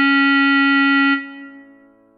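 Clarinet holding one long low note over a keyboard backing track. The note stops about a second in, and the backing chord rings on and fades away.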